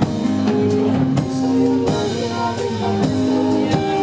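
Live rock band playing without vocals: drum kit keeping a steady beat under electric guitar and electric bass.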